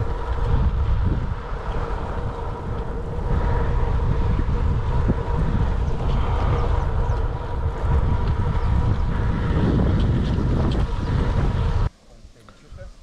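Wind buffeting the microphone of a camera carried on a moving bicycle: a loud, steady, gusty rumble.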